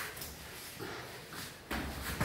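Two wrestlers scuffling and shifting their weight on a rubber floor mat: faint rustling and shuffling, then a sudden louder scuffle near the end.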